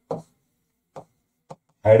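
Two short taps of a marker on a writing board, half a second apart, as handwriting goes on between the spoken phrases.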